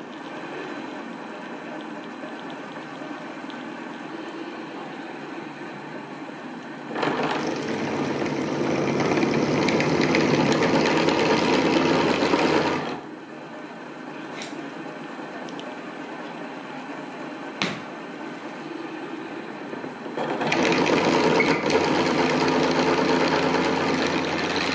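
Vintage 1950s pillar drill running on a VFD, its 10.5 mm twist drill cutting into thick steel in two louder, coarser spells of about six and four seconds, with the quieter steady running of the drill between them. A faint high whine sits under it all.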